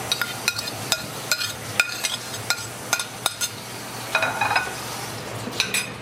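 Metal spoon scraping chopped peppers off a ceramic plate into a stainless steel mixing bowl: a run of sharp clinks, about two to three a second, each with a short ringing tone.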